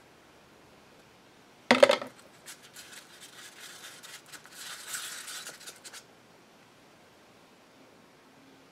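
A short loud sound about two seconds in, then a wooden stir stick scraping and clicking in a small cup as resin paste thickened with walnut dust is mixed, for about three and a half seconds.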